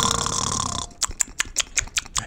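A person snoring: a rasping noisy breath that stops a little under a second in, then a quick fluttering rattle of sharp pops, about eight a second.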